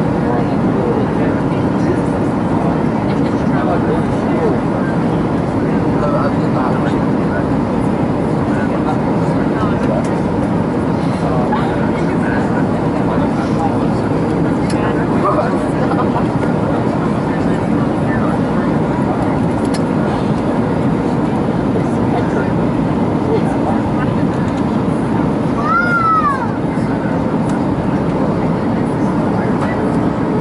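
Airliner cabin noise on descent: a steady rush of jet engines and airflow, heard from a window seat beside the wing.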